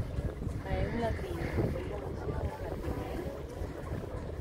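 Wind buffeting the microphone and water washing along the hull of a sailboat under sail, a steady low rumble, with faint voices in the background during the first couple of seconds.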